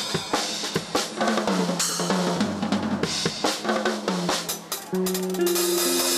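Jazz trio playing an instrumental: drum kit with snare, bass drum and cymbals under an electric bass and an archtop electric guitar. A melody of single notes moves step by step, with longer held notes near the end.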